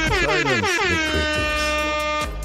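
Loud horn-like sound effect whose pitch slides down over the first second and then holds steady, over a low bass note.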